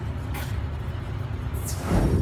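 A steady low rumble, a short hiss about half a second in, and a whoosh sweeping down in pitch near the end, from a video transition effect.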